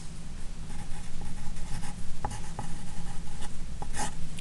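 Pen scratching on paper as "3rd Law" is written out by hand and underlined, with a few light ticks of the pen tip.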